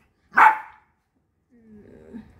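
Poodle giving one short, sharp bark about half a second in.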